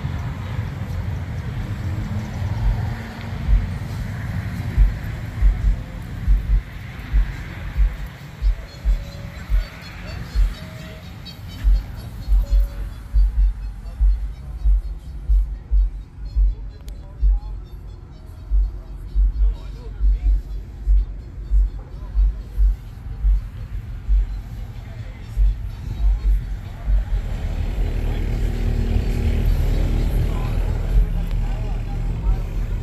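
Bass-heavy music from a car-audio system with two 18-inch subwoofers: short, deep bass hits repeat irregularly, coming faster after about twelve seconds in, and a steady low rumble swells near the end.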